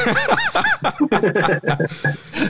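A man laughing in short repeated bursts, about four a second, then trailing into talk.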